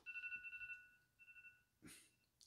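Faint mobile phone alarm tone: a steady high electronic beep, held for about a second and a half with a short break partway, from a phone that has not yet been silenced.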